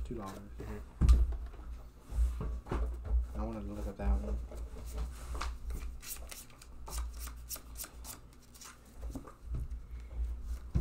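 Pokémon trading cards being handled and flicked through one by one, with a quick run of card snaps and rustles in the second half.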